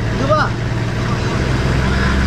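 Off-road vehicle's engine running with a steady low hum as it takes up a tow strap to pull a truck stuck in sand; its note changes about a second and a half in. A brief shout comes near the start.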